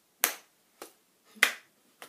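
Two sharp slaps of a hand striking another child's pressed-together hands, a little over a second apart, with a faint tap between them. These are the forfeit blows of a rock-paper-scissors hand game.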